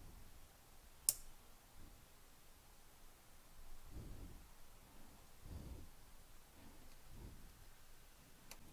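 A laptop heatsink's mounting tabs being bent back by hand: one sharp click about a second in, then a few faint, soft handling sounds. The tabs are bent to add mounting pressure on the CPU and GPU.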